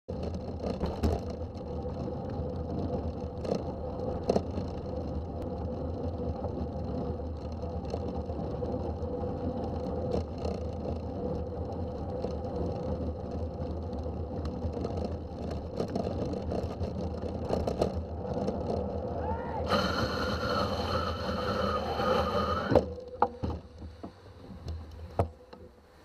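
Wind and wet-road tyre noise from a bike on the move, with a car's engine running alongside at close range. A brighter hiss and whine comes in for a few seconds, then the noise falls away near the end as the bike slows to a stop beside the car.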